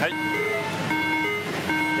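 Pachislot machine (Reno) playing its electronic Big-bonus fanfare after 7-7-7 lines up: a melody of plain, steady beeping tones stepping up and down in pitch, over the constant din of a pachislot hall.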